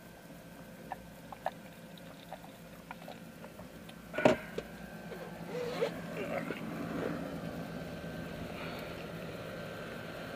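Small clicks and handling noises inside a parked car, then a loud clunk about four seconds in as the car door is opened, followed by louder, steady outdoor noise.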